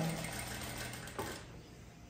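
Industrial electric sewing machine running with a steady low hum that fades away over the first second and a half, with a single click about a second in.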